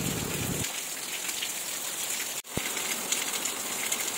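Heavy rain falling on a wet paved courtyard: a steady hiss of downpour, with a brief break about two and a half seconds in.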